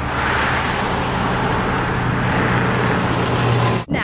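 A city transit bus's engine running close by: a steady low hum with a hiss above it. The sound cuts off suddenly near the end.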